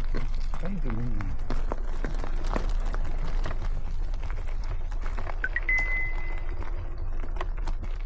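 Wind rumbling on the microphone and frequent rattling clicks from an electric mountain bike riding over a rough trail. A short high steady tone sounds just past the middle.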